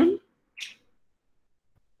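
The end of a man's spoken word, then dead silence on a gated online-call line, broken once by a brief faint high sound.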